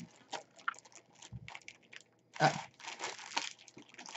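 Clear plastic cellophane bag crinkling in short, scattered crackles as hands work it open, with a louder crackle about two and a half seconds in as it catches on a staple.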